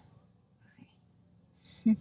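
A quiet pause with only faint traces of sound, then a woman's voice saying 'okay' near the end.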